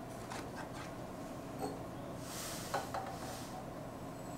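Sand poured off a tilted aluminium baking pan into a plastic beaker: a soft hiss of sliding sand for about a second, starting about two seconds in, with a few light knocks from handling the pan.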